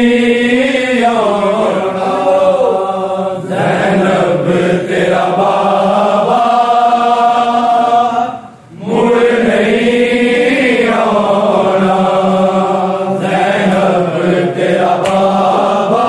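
A Shia noha (mourning lament) chanted by a party of male reciters in long, drawn-out sung lines. The chant breaks off briefly about eight seconds in, then starts again.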